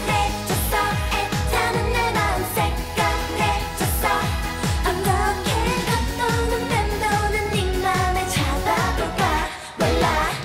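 K-pop dance song sung by two women, their voices over a steady electronic kick-drum beat, with the music briefly dropping out just before the end.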